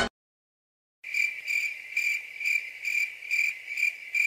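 Cricket chirping at night: a high, even trill in steady pulses about twice a second, starting about a second in after a silence.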